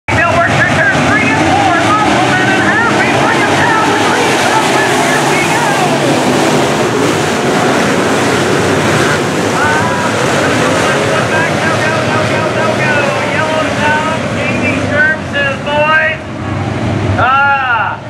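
A pack of dirt-track modified race cars with V8 engines running together, loud and continuous, many engines revving and falling back in overlapping pitches. The noise eases off a little about sixteen seconds in.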